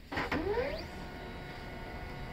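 The mechanism of an HP Laser MFP 137fnw laser printer starting up. A click is followed by a whine that rises over about half a second, and then a steady running hum with a faint high tone.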